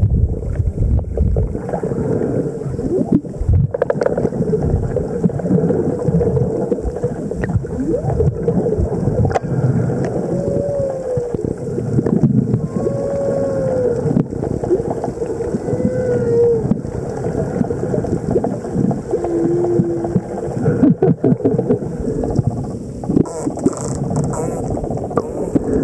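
Underwater sound in the open sea: a steady low rush of water noise with scattered clicks. From about ten seconds in come several faint short calls, most rising then falling in pitch, typical of marine mammal vocalizations.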